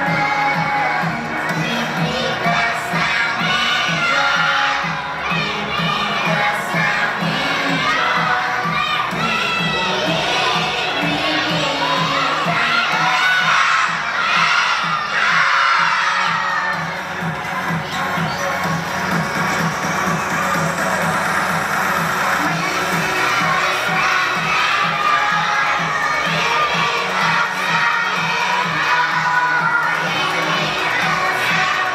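A large group of young children singing loudly, close to shouting, over a backing track with a steady beat.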